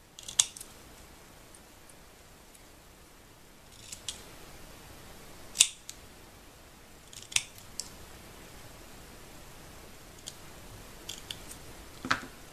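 Scissors snipping a small strip of manila envelope paper, cutting fishtail banner ends: a handful of short, sharp snips spaced a second or more apart.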